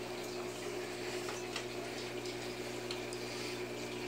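Aquarium equipment running steadily: water bubbling from a curtain of air bubbles rising through the tank, with a steady low electrical hum underneath.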